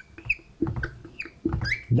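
Felt-tip marker squeaking against a whiteboard while numbers are written: several short, high squeaks about half a second apart.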